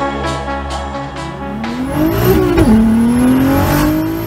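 Background music with a beat, then a Stage 2-tuned MK7 Volkswagen Golf R's turbocharged 2.0-litre four-cylinder revving up hard, dropping sharply at an upshift about two and a half seconds in and pulling again, with a thin high whistle over it.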